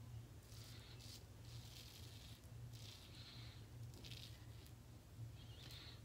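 Faint scraping strokes of a single-edge safety razor with a Feather Pro Super blade cutting lathered neck stubble, about five short strokes roughly a second apart, over a low steady hum.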